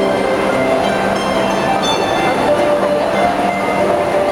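Two harps playing a duet, plucked notes ringing on and overlapping, over a steady background hum of a crowd.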